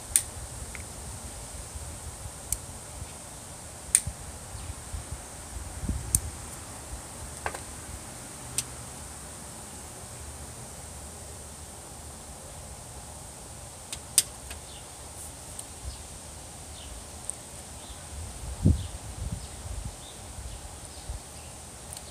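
Tobacco pipe being lit and puffed: scattered faint sharp clicks and a few soft low puffs, over a steady faint high whine in the background.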